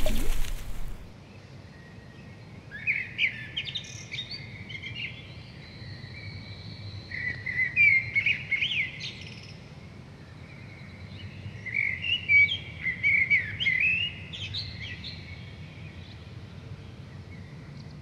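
Small birds chirping and trilling in three bouts of quick, high calls over a steady low background rumble. A short burst of noise opens the sound.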